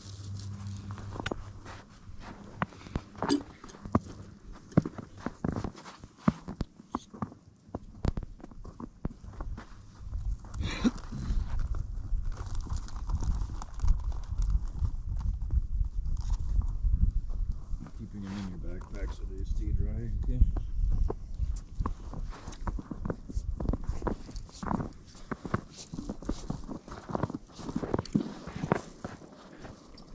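Footsteps crunching on snow and ice, with scattered sharp knocks and scrapes, over a low rumble of wind on the microphone; faint voices come through in places, most clearly a little past the middle.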